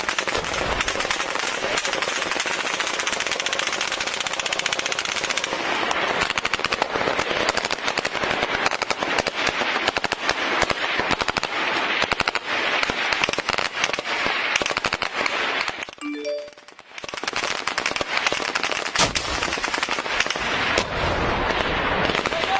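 Heavy automatic gunfire in a firefight, a dense rapid run of shots with a short lull about sixteen seconds in before it starts again.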